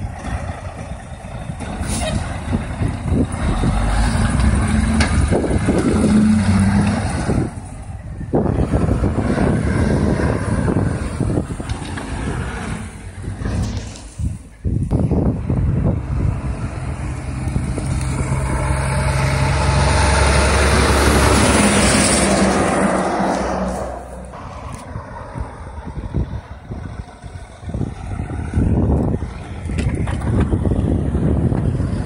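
A dump truck's Detroit diesel engine pulling away, followed by more trucks and road traffic passing. The loudest pass-by builds and fades about twenty seconds in.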